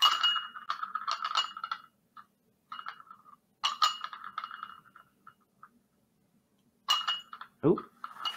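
A small glass cup with a metal sphere magnet in it clinking and rattling as it is handled and set on a tape roll, in several short bursts with a faint ringing to each.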